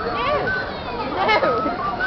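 Children shouting and squealing as they play, with a crowd's voices around them in the open street.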